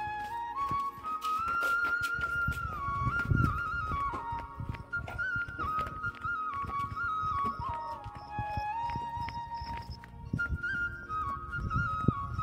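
Background flute music: a single slow melody line moving in steps, with irregular low knocks underneath.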